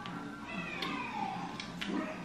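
Soft background music with a single cat meow about half a second in, falling in pitch, and a few light clicks.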